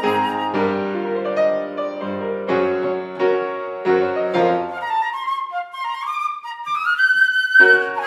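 Concert flute and grand piano playing together. About five seconds in, the piano drops out and the flute climbs alone in a rising run of notes, and the piano comes back in under a high, held flute note near the end.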